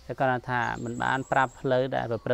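A man talking steadily, with a faint, high, steady insect trill under the voice from about half a second in until shortly before the end.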